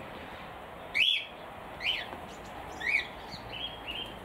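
A bird chirping in an aviary: short calls that rise and fall in pitch, three clear ones about a second apart, then a few fainter ones near the end.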